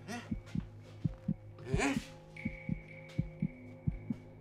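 Film sound design: low, evenly spaced thumps about four a second over a steady low drone. A thin, high steady ringing tone comes in a little past the middle. There is a brief voice sound just before the middle.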